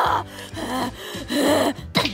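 A woman's voice gasping twice in distress, the second gasp about a second and a half in, over quiet background music.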